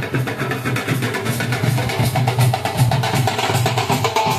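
Hand drums of a street procession, barrel drums and snare-like side drums, beaten in a fast, dense rhythm of rapid strokes.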